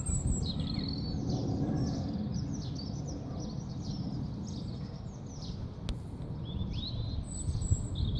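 Small songbirds chirping, a run of quick descending chirps, over a low steady rumble; a single sharp click about six seconds in.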